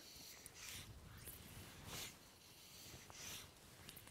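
Near silence, with faint soft whooshes about every second and a quarter.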